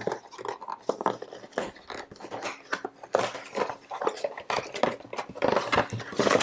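Cardboard packaging being handled and opened: irregular rustling, scraping and light knocks as the accessory box is slid out and its lid lifted.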